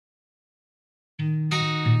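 Silence for a little over a second, then a bluegrass band starts playing abruptly, with acoustic guitar to the fore.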